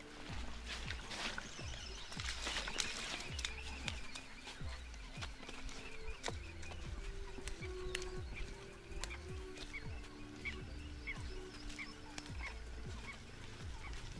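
Wild animals calling over open water: scattered low calls, then a run of short high chirps about twice a second in the last few seconds.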